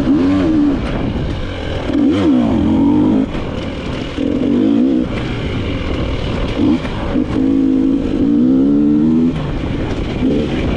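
Dirt bike engine revving up and down over and over as the throttle is worked on tight woods trail, with surges about every second or two and a short easing off just after three seconds in.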